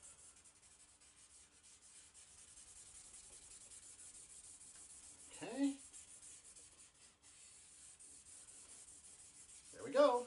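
Blending stump rubbing over pencil graphite on drawing paper: a faint, steady scrubbing that evens out the shading. A short rising tone sounds about halfway through and again at the end.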